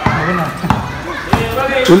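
A ball bouncing several times on a hard tiled courtyard floor, the bounces a little over half a second apart, with voices in the background.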